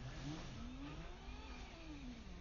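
Faint motor vehicle engine whose pitch rises and then falls, with a low steady hum under it.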